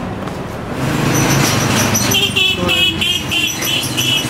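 A motor vehicle engine running close by on a street, with a rapid series of high warbling chirps starting about halfway through.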